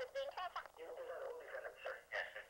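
Speech over a telephone line: a voice talking, thin and narrow, with no low end.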